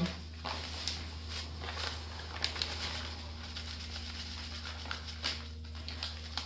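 Dry black groundbait pouring out of a plastic bag into a plastic bucket: a faint soft hiss with a few light rustles and crinkles of the bag, over a steady low hum.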